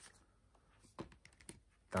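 Faint handling noise of a paper booklet and a DVD case: a few light clicks and taps about halfway through.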